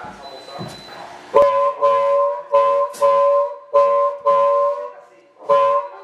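Blues harmonica amplified through a vocal microphone, playing a riff of short, repeated chords in a steady rhythm of about two a second. The riff starts about a second and a half in and pauses briefly near the end.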